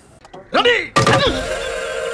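A short rising-and-falling vocal cry, then a sudden thunk about a second in followed by a held musical chord, the audio of a comedy film clip used as a meme.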